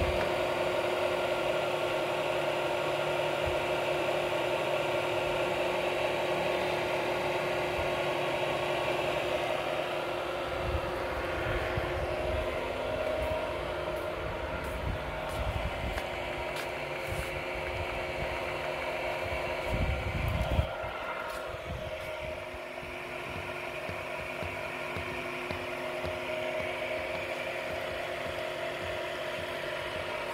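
Honey-processing machinery running steadily, a motor hum with a few low knocks around eleven and twenty seconds in.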